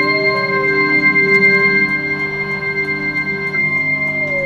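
Electronic keyboard chords held in a slow house-music jam, one note sliding down in pitch near the start and a higher tone dropping out shortly before the end, over a light ticking.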